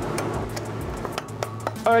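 Rock hammer chipping at a coal seam in a rock face: an irregular run of sharp taps and clinks.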